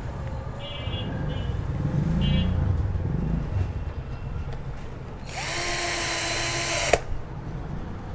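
Cordless drill-driver driving a screw through a steel picture-hanger plate into a wooden board. The motor spins up a little over five seconds in, runs steadily for under two seconds, and stops suddenly with a click.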